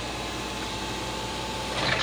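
Volvo EW145B wheeled excavator's diesel engine running steadily, with a short hiss-like burst near the end.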